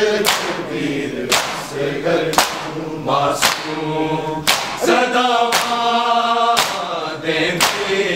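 Large group of men chanting a Muharram noha (lament) in unison. Sharp slaps of open hands striking bare chests (matam) land in time with the chant, about once a second.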